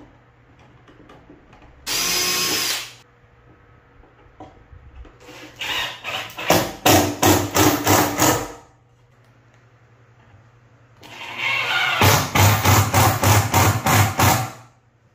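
Cordless drill driving screws into plywood: a short spin about two seconds in, then two longer runs that pulse about three times a second as the screws are driven home.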